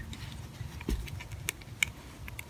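Handling sounds of a plastic iPad power connector plug being worked into the iPad's dock port through a hole in a wooden frame: a dull knock about a second in, then two sharp clicks.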